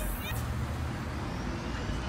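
A motor vehicle running on a city street, a steady low engine hum over general traffic noise.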